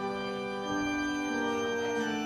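Church organ playing slow held chords, moving to new notes every half second or so.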